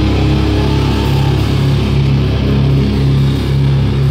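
Hardcore band playing live and loud: distorted electric guitar and bass riffing in short, repeated low notes over drums.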